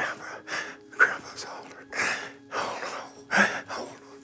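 A man's quick, heavy breaths and gasps, about two a second, from distress while reliving a frightening memory under hypnosis.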